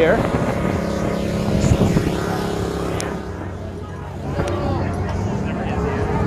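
A steady engine hum with a low, even pitch, easing off about halfway through, with people's voices in the background.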